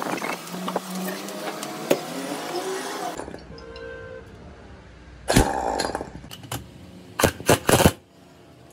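Pneumatic impact wrench on the bolts of a truck differential carrier, firing one longer burst about halfway and then three or four quick bursts near the end. Before that come light clicks of metal parts being handled.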